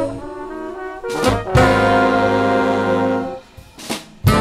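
Jazz big band of trumpets, trombones and saxophones playing. After a softer stretch, a sharp drum hit leads into a loud held brass chord of about two seconds. The chord breaks off into a brief gap marked by a single hit.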